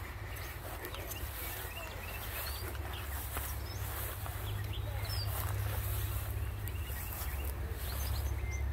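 Faint, scattered bird chirps over a steady low rumble.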